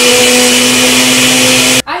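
Countertop blender running at full speed, blending a milk and Oreo cookie mixture: a loud, steady whir over a constant motor hum. It cuts off suddenly near the end.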